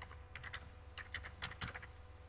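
Faint, irregular clicking of keys on a computer keyboard, about a dozen quick keystrokes.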